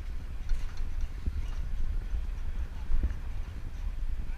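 Wind buffeting and rumble on a head-mounted action camera while riding a bicycle along a paved path, a steady uneven low rumble with faint scattered ticks and rattles.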